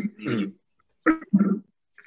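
A man clearing his throat with a few short, rough rasps during a pause in his speaking.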